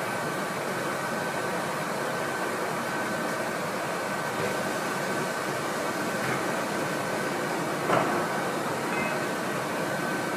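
Steady machine-shop hum and hiss from running CNC machinery and ventilation, with a thin high whine held at one pitch throughout. A brief knock about eight seconds in, as the part is handled at the robotic machining cell.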